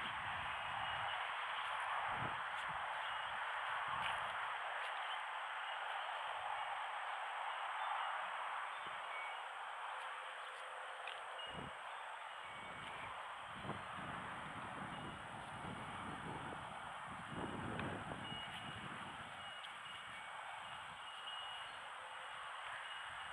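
Outdoor ambience: a steady background hiss, low rumbles of wind on the microphone coming and going, and faint short bird calls.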